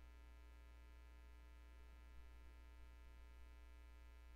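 Near silence: a steady low electrical mains hum, with a faint tick a little past halfway.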